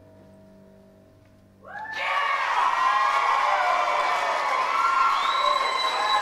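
A choir's last held chord fades away, then about a second and a half in the audience bursts into loud applause and cheering, with high shouts and whoops over it.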